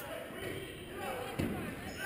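Gym sound during a basketball game: indistinct voices from players and spectators, with one basketball bounce on the hardwood court about a second and a half in.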